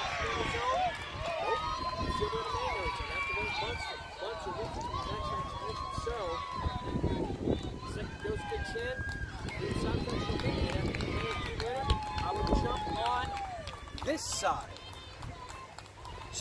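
High-pitched voices shouting and calling, in short rising and falling cries with no clear words, over a steady outdoor background.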